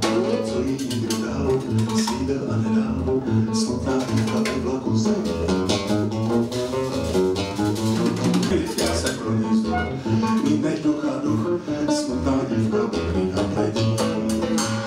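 Live band music led by plucked guitar, with a bass line underneath, playing without a break.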